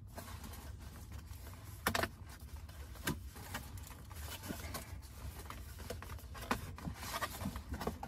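Cardboard doughnut box being handled and folded shut: scattered rustles, scrapes and light taps, the sharpest about two and three seconds in, over a steady low hum.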